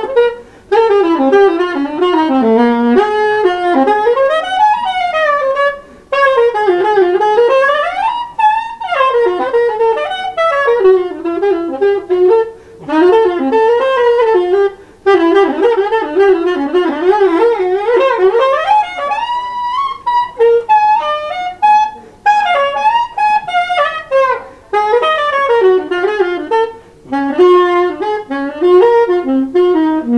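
Solo soprano saxophone in free improvisation: runs of notes that swoop up and down in pitch, broken by short pauses for breath every few seconds.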